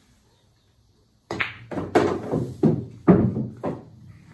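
Pool cue tip striking the cue ball a little over a second in, followed by a quick run of sharp clacks and knocks as the balls collide, hit the cushions and an object ball is pocketed.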